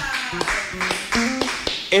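A few scattered hand claps and taps, mixed with brief snatches of voices.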